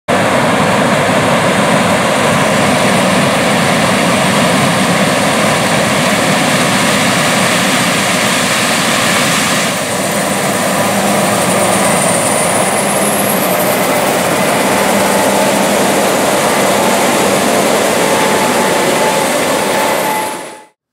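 Case IH Axial-Flow combine harvesting corn, its engine and threshing machinery running in a loud, steady drone. The sound changes abruptly about halfway through, and a faint rising whistle follows shortly after.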